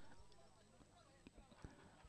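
Near silence: faint outdoor background with a couple of faint single ticks.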